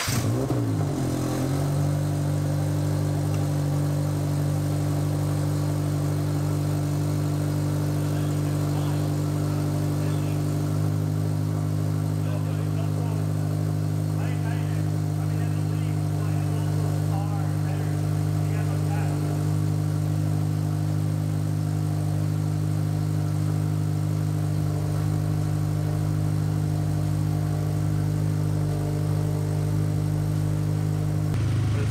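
Turbocharged Subaru BRZ's 2.0-litre flat-four engine idling steadily just after start-up, its revs wavering for the first second or so before settling to an even idle. It is being run on fresh oil to check for leaks.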